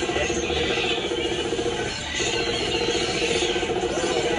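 Coin-operated game machine running with a steady mechanical rattle while its hand levers are worked. The rattle breaks off for a moment about halfway through, then resumes.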